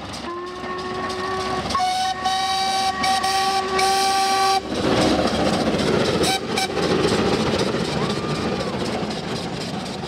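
A steam whistle blows twice: a shorter blast, then a longer one of about two and a half seconds. The steady rumble and exhaust of a passing steam train follows.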